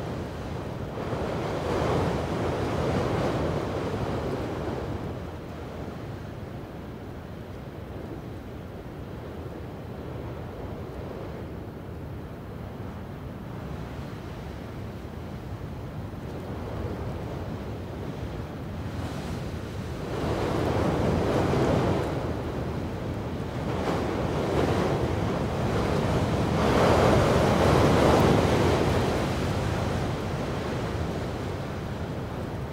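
Sea waves washing in and drawing back in slow swells, with wind on the microphone; the surf is louder near the start and builds again in the last third.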